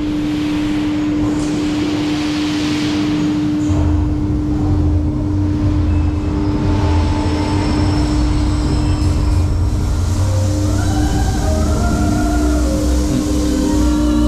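B&M dive coaster train starting to move along its tyre-driven track, a low rumble setting in about four seconds in over a steady hum. Near the end, pitched themed music tones begin.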